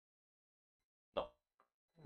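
Near silence, broken about a second in by a single short spoken word, "No."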